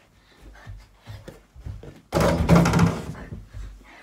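Light knocks, then a sudden loud thump about halfway through that rings on for most of a second, from toy-basketball play at a mini hoop hung over a wooden door.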